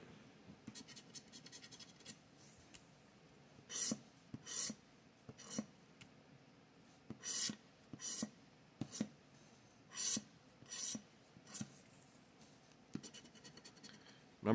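Latex coating being scratched off a Joker's Wild scratch-off lottery ticket: a run of quick fine scratches, then single short scrapes about a second apart, then quick scratching again near the end.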